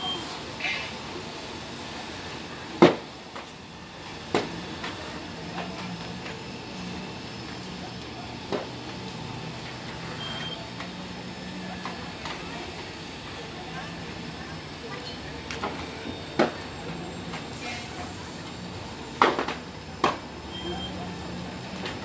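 A building fire, heard from a distance, with sharp pops and cracks several times over a steady background noise and a low hum; the loudest crack comes about three seconds in. A short high beep sounds about every ten seconds.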